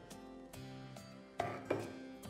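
Soft background guitar music, with two sharp knocks of metal serving utensils (ladle and tongs) against the pan and plate about a second and a half in, a fraction of a second apart.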